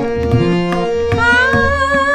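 Tabla playing a rhythmic pattern of deep bass strokes and higher ringing strokes, under steady sustained instrument tones in a Bangla film song. About a second in, a woman's singing voice comes in on a rising note and holds it.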